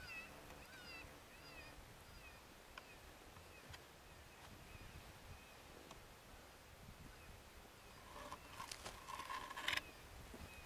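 Faint high, wavering whistled calls from an electronic predator caller playing a distress sound, in the first two seconds. About 8 s in, a burst of rough rustling noise builds up and peaks just before the end.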